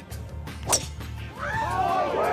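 A golf driver strikes a teed ball once, a sharp crack about three-quarters of a second in. Over the last half second a gallery of spectators begins calling out.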